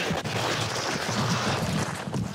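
Dog sled running fast over snow: a steady, rough scraping hiss of the runners on the snow, mixed with wind on the microphone.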